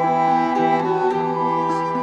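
Acoustic folk music played live: violin and nyckelharpa bowing sustained melody notes over a steady low drone, with acoustic guitar. A higher bowed note comes in a little under a second in.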